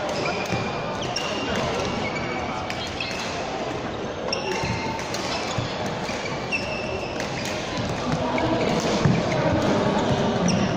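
Badminton play on an indoor court floor: short high shoe squeaks and racket strikes on the shuttlecock, busier and louder near the end as a rally gets going, over the hum of voices in a large hall.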